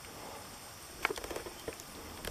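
Faint rustling in grass with a few light, irregular clicks starting about a second in.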